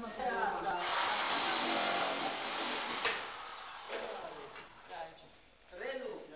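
An electric drill runs once for about two seconds with a high, steady whine, then spins down when it is let off. It is being used to fix plasterboard panels to a ceiling.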